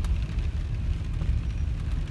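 Low, steady rumble of a car heard from inside its cabin, sitting in slow traffic.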